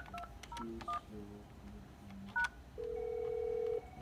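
Telephone keypad touch-tones (DTMF) as a number is dialed: about five short two-tone beeps, irregularly spaced, followed near the end by a steady tone lasting about a second.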